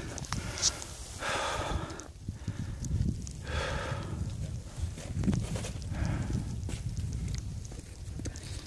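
Wind buffeting a phone's microphone outdoors in falling snow, a steady low rumble. Louder rustling swells come about a second in and again near the middle, with a few small clicks of handling.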